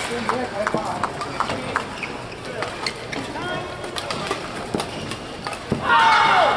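Badminton rally: rackets striking the shuttlecock with sharp clicks, and shoes squeaking and stepping on the court mat, scattered irregularly through.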